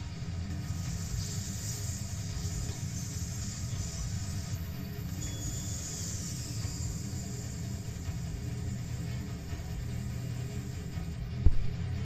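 Film soundtrack played through a TV and picked up in the room: a steady low rumble with a high hiss, and one sudden loud thump about eleven and a half seconds in.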